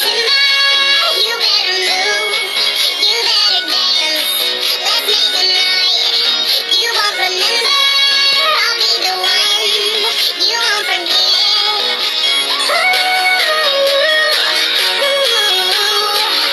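A pop song with processed, auto-tuned vocals playing back steadily, with a young girl singing along over it.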